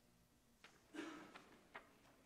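Near silence: room tone with a few faint clicks and light rustles scattered through it.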